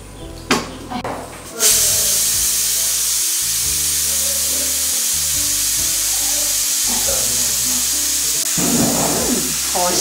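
Pressure cooker venting its steam with a loud, steady hiss that starts suddenly about a second and a half in, after a couple of knocks from the pot being handled. The cooker has been steaming chicken for twenty-five minutes and is being depressurised so it can be opened.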